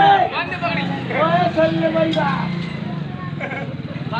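Raised voices of the performers calling out over crowd chatter, with a steady low hum running underneath.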